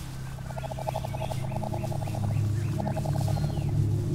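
Two bursts of a rapid rattling, trilling animal call, the first about a second and a half long and the second shorter, with faint bird chirps above them and a steady low hum underneath.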